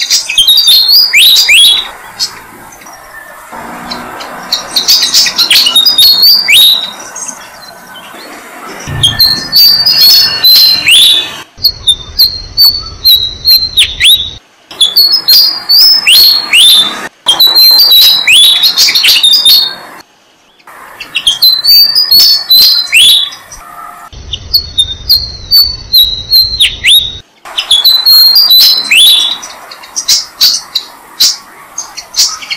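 Malaysian pied fantails chirping loudly: quick series of sharp, high, downward-sliding chirps in bursts of a few seconds, with short breaks between.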